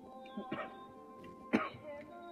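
A man coughs twice, about a second apart, the second cough the louder, over a song playing in the background.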